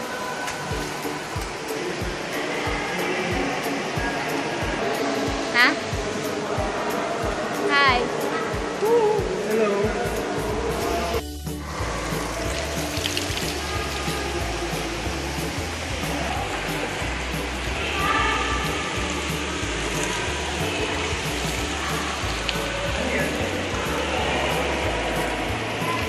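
Flowing water and indistinct voices, with background music with a steady bass line coming in about ten seconds in.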